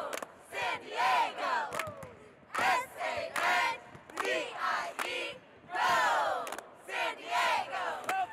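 A small group of young women's voices yelling short cheers together in repeated bursts, with hand claps between them, in a large, nearly empty arena.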